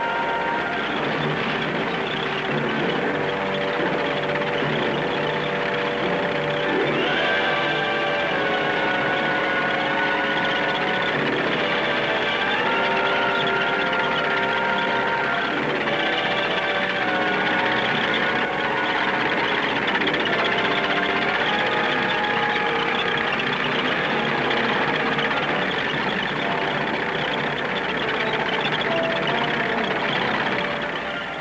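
Background music of held notes and chords that shift every second or two, playing steadily throughout.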